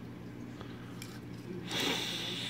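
Steady faint low hum, then about three-quarters of the way through a person begins a long sniff through the nose, smelling a freshly unboxed die-cast toy car.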